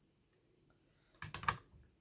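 Hard plastic PSA graded-card slabs handled: a quick cluster of several clicks and clacks about a second and a quarter in, as the cases knock together.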